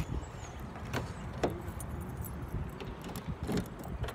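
Low, uneven rumble of wind and handling on a handheld phone's microphone outdoors, with a few sharp clicks.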